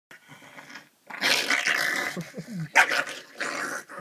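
Pug growling over a marker held in its mouth as someone reaches to take it, with one sharp, loud outburst nearly three seconds in.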